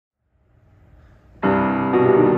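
Grand piano: after about a second of faint room noise, a full chord is struck suddenly about one and a half seconds in and rings on, with a new attack near the end.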